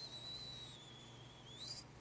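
A faint, high whistling tone, held steady while sinking slightly in pitch, then lifting briefly just before it stops near the end.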